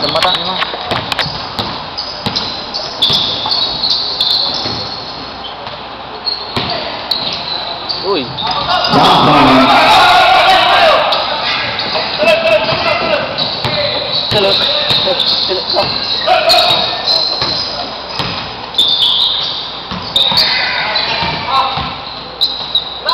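Basketball game in a big echoing gym: a ball bouncing on the hardwood court in short sharp knocks, with players and spectators shouting. The voices swell into a louder burst of shouting about nine seconds in and die down after about two seconds.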